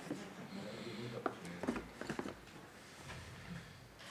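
Faint, low voices murmuring in a room, with a few small sharp clicks.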